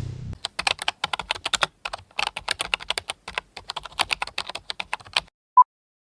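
Rapid, irregular clicking of typing on a computer keyboard for about five seconds, stopping abruptly. Near the end a single short beep sounds, the first of a countdown timer's once-a-second beeps.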